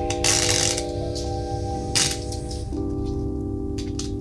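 Background music of held chords, with a metal ball chain rattling as it is pulled through the slits of a playing card, in a short burst near the start and again about two seconds in.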